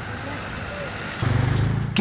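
Excavator engine running as its bucket works through a plastered wall, over a steady noisy background. About a second in the engine gets louder, a low steady drone.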